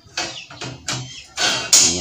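Hand-operated latch of a welded steel-rebar pen door being worked: a few sharp metal clanks, the loudest near the end followed by a brief metallic ring.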